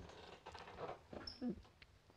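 Faint sounds of a man getting up from a stool and moving: soft shuffles and small knocks, with one brief pitched sound about one and a half seconds in.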